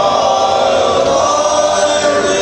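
Male barbershop chorus singing a cappella in four-part close harmony, holding sustained chords.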